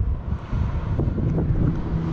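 Wind buffeting the microphone over a low vehicle rumble, with a steady low engine hum coming in about halfway through.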